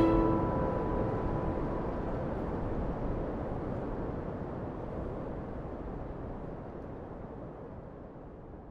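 A steady rushing of wind that fades away gradually from fairly loud to faint, with the last notes of string music dying away in the first half-second.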